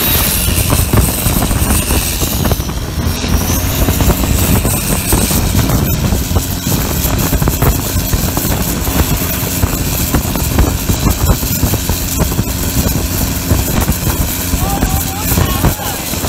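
Modified turbocharged diesel engine of a Thai longtail racing boat running hard at speed, with rushing water and spray from the hull.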